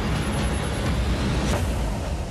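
Cinematic title-sequence sound design: a loud, deep rumble with a sharp hit about one and a half seconds in, part of the dramatic theme music.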